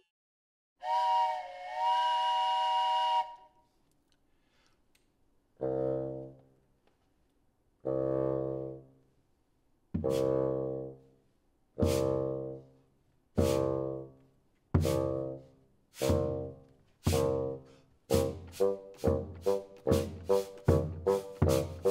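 A wooden train whistle blown once, sounding a held chord of several pitches. Then bass drum beats with short low bassoon notes, slow at first and speeding up steadily, imitating a steam train pulling away.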